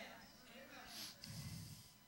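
Near silence, with a faint breath through the nose into a handheld microphone about a second in.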